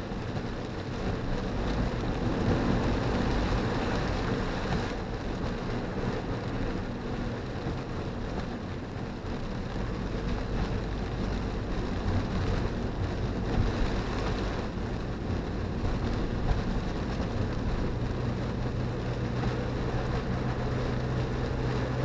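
Steady road noise heard inside a car's cabin on a wet road: tyres hissing through rainwater over a low drone from the engine and drivetrain.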